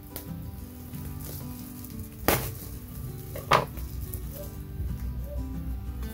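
A plastic cable tie being cut off a white plastic bag, with two sharp snaps a little over a second apart, and the thin plastic bag crinkling as it is handled. Soft background music plays underneath.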